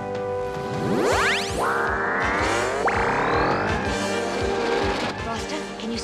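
Cartoon background music with a regular low drum beat, overlaid by synthesized sound effects. A fast rising whoosh comes about a second in, then a buzzing electronic tone starts abruptly and climbs slowly in pitch for a couple of seconds before fading.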